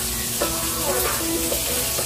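Meat sizzling on a tabletop grill pan, a steady hiss.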